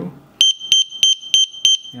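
The IKEA BADRING water leakage sensor's buzzer sounding its leak alarm: a high-pitched tone that starts about half a second in and pulses about three times a second. It is set off by a finger bridging the two water-detection contact pads.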